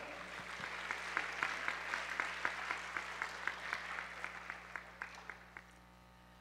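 Audience applauding, with distinct claps at an even beat of about four a second, dying away toward the end.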